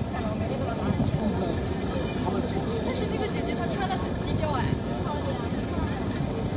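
Indistinct voices over steady background noise, too unclear to make out words.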